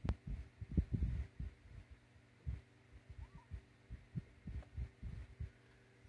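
Someone puffing on a cigar: a string of soft, irregular low puffs and lip pops, thickest in the first second and sparser after, over a faint steady hum.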